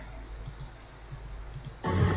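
Several light computer-mouse clicks, a few about half a second in and more just before the end, as a paused video is resumed. Right at the end the played clip's audio cuts in suddenly with a woman speaking loudly.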